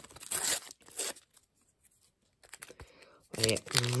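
A paper sticker packet being torn open by hand: a few short rips in about the first second, then quiet.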